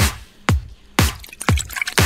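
G-house track in a DJ mix: a four-on-the-floor kick drum at about two beats a second, each kick dropping in pitch, with light clicking percussion joining in the second half.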